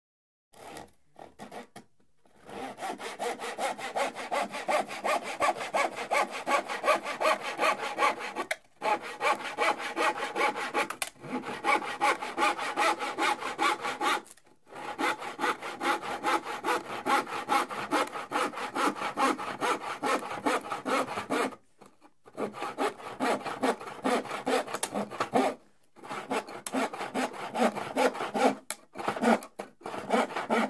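Hand saw cutting a piece of plywood in rhythmic back-and-forth strokes. A few short starting strokes come first, then a long run of steady sawing broken by several brief pauses.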